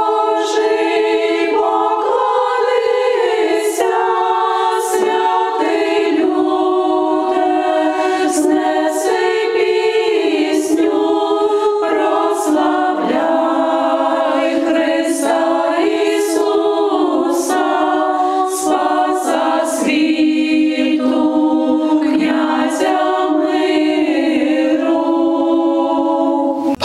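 A choir singing unaccompanied, in slow held chords, with the words audible.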